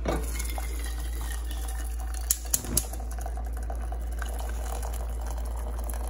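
Water pouring in a steady stream into a stainless steel saucepan, with three sharp clinks a little past the middle, over a low steady hum.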